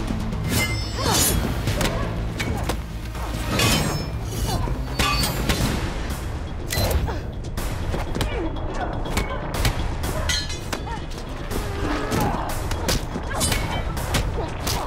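Fight-scene soundtrack: a music score running under a string of sharp blows, stick strikes and thuds that come every second or two.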